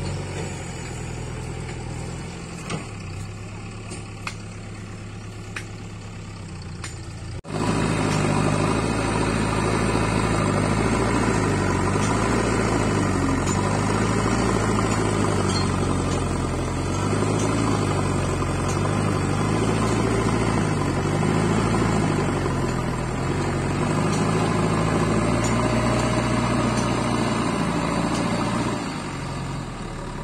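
JCB backhoe loader's diesel engine running, at a moderate level at first, then much louder from about seven and a half seconds in. Its pitch rises and falls as the machine works, and the level drops again near the end.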